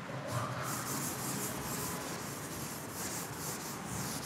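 Chalkboard duster wiping chalk off a blackboard in quick back-and-forth strokes, about three a second, a dry rubbing hiss.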